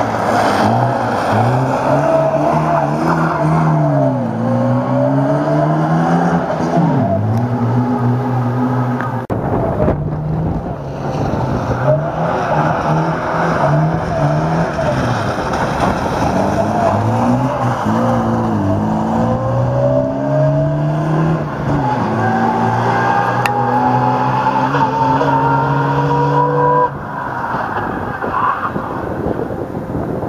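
Rally-prepared Moskvich 412's four-cylinder engine revving hard, its pitch climbing and falling again and again as it shifts through the gears, in several passes cut together. Near the end the sound cuts to a quieter, more distant engine.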